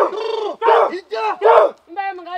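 Group of Himba women chanting together in short, loud calls, several voices at once, about four calls in two seconds with brief breaks between them.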